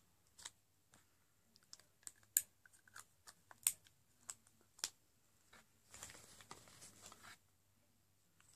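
Lipstick being handled and applied: irregular light clicks and taps over the first five seconds, then a rustling scrape of about a second and a half near the end.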